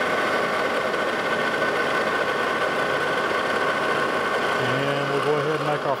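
Lodge and Shipley manual metal lathe running, its spindle turning a hex bar in the three-jaw chuck with a steady mechanical whine.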